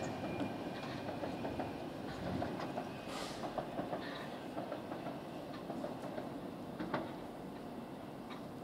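South Western Railway Class 450 electric multiple unit running away over the track, faint and fading as it recedes, with scattered light clicks of wheels over rail joints and points.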